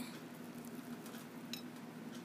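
Metal fork cutting into a frosted banana cake on a ceramic plate: faint soft clicks and scrapes, with one light clink of the fork against the plate about one and a half seconds in.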